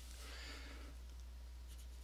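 Faint scratching of a pen or stylus on a writing tablet, quick zigzag strokes scribbling out a written term, over a low steady electrical hum.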